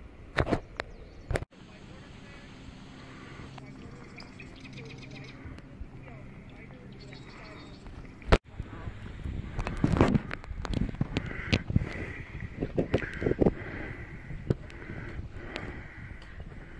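Paddling an inflatable kayak: irregular paddle splashes and knocks against the hull, with indistinct voices.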